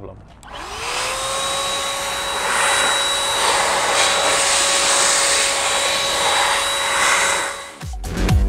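Chemical Guys ProBlow handheld electric car dryer-blower switched on, its motor whining up to a steady pitch within half a second over a loud rush of air as it blows water out of a car's grille. It winds down near the end.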